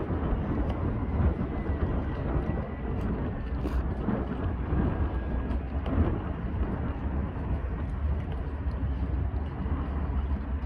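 Wind buffeting the microphone, a steady low rumble, with the distant running of a small cargo ship's engines beneath it as the ship turns in the river.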